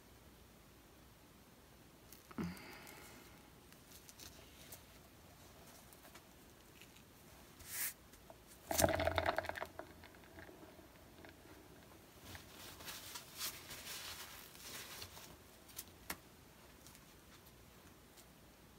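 Faint handling noises of a wet painted canvas being tilted and then spun on a turntable: scattered rustles and light knocks, a sharper knock and rattle about nine seconds in, then a stretch of soft rustling hiss while it turns.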